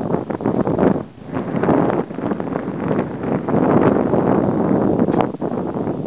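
Gusty wind blowing across the microphone, loud and uneven, with a brief lull about a second in.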